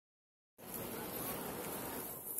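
Steady background hum of a large, reverberant stone church interior with visitors moving about, cutting in about half a second in after silence.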